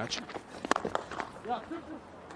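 Cricket bat striking the ball once, a sharp crack about two-thirds of a second in, as the batter plays a shot off a spin bowler.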